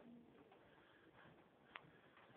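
Near silence: faint room tone in a hallway, with one short sharp click near the end.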